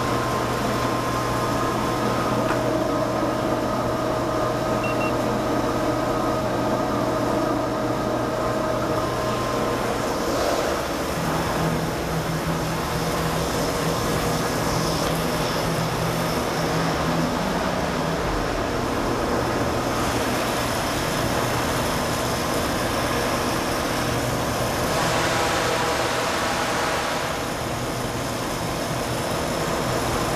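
Blommer chocolate melting tank's 5 hp sweep agitator drive running: a steady motor-and-gear hum with a few held low tones, turning the scraper paddles inside the vessel.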